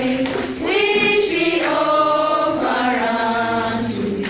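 A group of children singing together as a choir, holding long notes in phrases with brief breaks between them.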